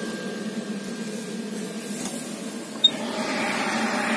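Steady low mechanical hum of the coal boiler's auger feeder drive, its electric motor and gearbox running. A sharp click comes about three seconds in, followed by a broader rushing sound of the burner fire.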